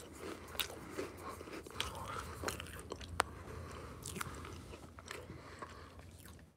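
Faint chewing, close to the microphone, with scattered small sharp clicks.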